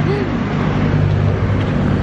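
Steady low engine drone of road traffic, a motor vehicle running close by, with a brief bit of voice near the start.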